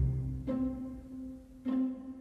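Background music with plucked low string notes: one about half a second in and another near the end, each fading away.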